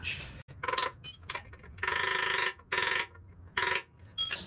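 Socket ratchet wrench clicking in four quick runs of strokes, the longest in the middle, as nuts on a motorcycle's front wheel are tightened, with a sharp metal clink about a second in.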